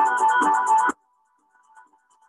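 Balinese gamelan ensemble playing with Western instruments, a fast pulsing passage of metallic struck tones with a steady beat of low strokes. About a second in it cuts out suddenly, leaving only a faint thin tone.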